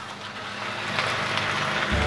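Fish-roe tortilla batter sizzling in hot frying oil as it is poured from a ladle into the pan; the sizzle builds about half a second in and then holds steady.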